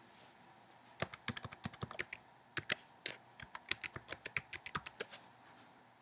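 Computer keyboard being typed on: a quick, uneven run of key clicks starting about a second in and stopping near the end.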